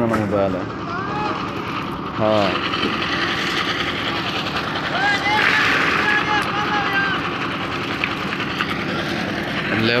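Voices calling out over a steady engine drone that runs underneath throughout.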